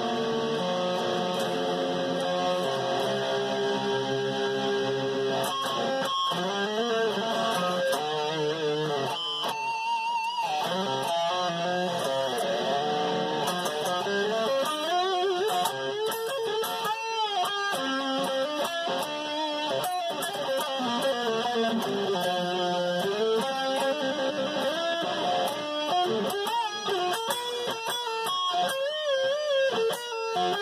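Jackson electric guitar with a reverse headstock being played solo: held notes for the first few seconds, then a quicker lead line full of string bends and vibrato.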